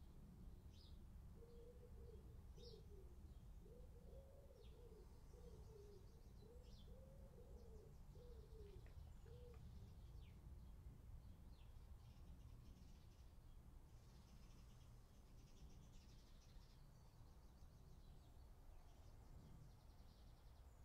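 Near silence with faint birds: a pigeon cooing a low phrase of repeated notes from about a second in until about halfway, and small birds chirping faintly now and then.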